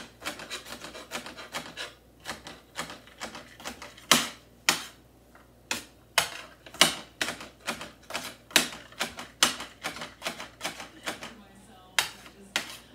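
Kitchen knife chopping garlic cloves on a cutting board: a run of sharp, irregular knocks, a few a second, some much louder than others.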